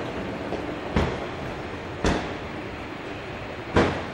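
A steady low rumble of background noise, broken by three dull thumps: about a second in, about two seconds in, and just before the end, the last the loudest.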